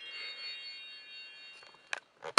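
Disney Frozen Cool Tunes Sing Along Boombox toy playing its power-on jingle: a quick rising run of electronic chime notes that ring on together and fade out. A small click near the end.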